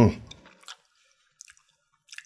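A man's short "hmm" falling in pitch at the start, then a few faint, wet mouth clicks and lip smacks as he pauses to think.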